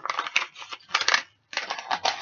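Packaging crinkling and rustling as parts are pulled out and handled, in two stretches with a short pause about a second and a half in.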